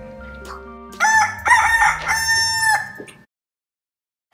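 A rooster crowing once, starting about a second in and lasting under two seconds, over quiet background music; the sound then cuts off abruptly.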